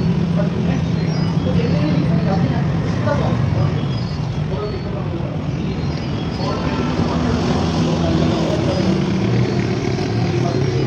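An engine running steadily with a low drone, under indistinct voices.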